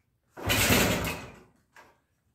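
One kick on the kickstarter of a 1969 Honda CT90's single-cylinder four-stroke engine: a burst of about a second as the engine turns over, fading out without catching. It is set at half choke with a little throttle, and the owner thinks he may already have flooded it.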